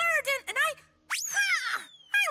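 Cartoon leap sound effect: a very fast rising zip about a second in, then a long falling whistle, with a lower pitched tone sliding down beneath it.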